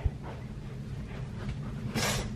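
Low rumbling handling noise from a handheld camera on the move, with faint footsteps, a soft thump just as it begins and a sharp rustle or click at the very end.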